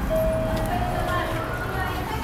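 Mitsubishi passenger elevator's electronic chime: a clear steady tone held about a second and a half, joined partway through by a second, slightly higher tone.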